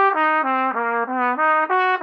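Solo trumpet playing a short line of separate tongued notes, each about a quarter second, stepping down and then back up, the last note held. It is a demonstration of the dominant's Mixolydian mode in the key of B-flat concert.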